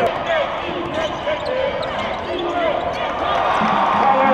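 Basketball game sound on a hardwood court: the ball being dribbled and players' shoes squeaking in many short chirps, over the general noise of voices in the arena.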